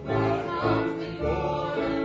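Singing voices holding notes over piano accompaniment, part of a live song.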